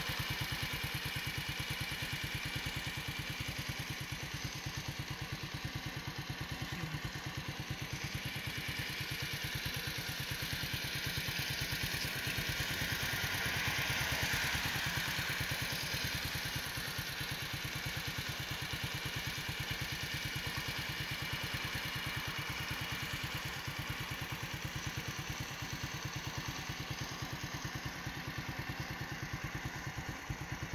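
An engine idling steadily, its low pulses evenly spaced, with a swell of hiss around the middle.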